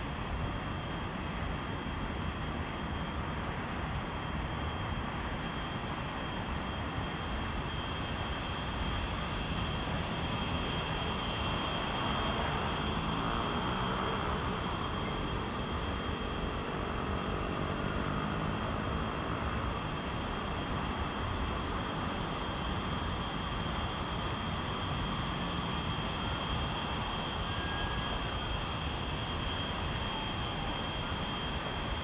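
Steady wind rushing and buffeting over the microphone at the top of a tall open tower, with a faint constant high whine running underneath. The rush swells a little through the middle.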